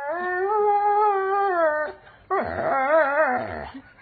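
Doberman pinscher singing: one long howl held steady for nearly two seconds that drops in pitch at its end, then, after a short break, a second howl whose pitch wavers up and down.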